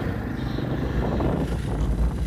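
Jawa Perak motorcycle's single-cylinder engine running steadily while riding, with wind and road noise.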